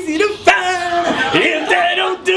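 A man singing unaccompanied in a loud, strained voice, holding long notes.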